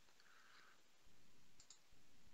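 Near silence with a few faint clicks near the end, from a computer keyboard and mouse being used to type and pick from a menu.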